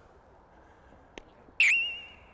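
A comic whistle-like sound effect: a sudden high tone about one and a half seconds in that dips briefly, then holds steady and fades. A faint click comes just before it.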